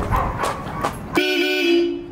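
Honda ADV scooter's horn sounded once, a loud steady blast of a little under a second starting just past halfway through. A few clicks come before it.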